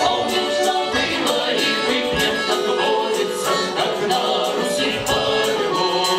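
Folk vocal ensemble singing a song with instrumental accompaniment, voices held in long sung notes over a steady beat.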